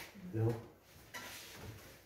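A man's voice saying one short word in a small room, followed by a pause with only faint room noise.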